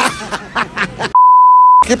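A censor bleep: one steady, high, pure beep lasting about two-thirds of a second, starting about a second in, with all other sound cut out beneath it. Before it, a man's voice and laughter.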